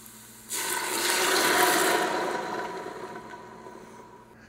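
Red wine (Chianti) poured into a hot stainless Instant Pot insert over sautéed onions and garlic, hissing and sizzling as it deglazes the pot. The rush of pouring and sizzling starts suddenly about half a second in, peaks, then dies away over the next two seconds.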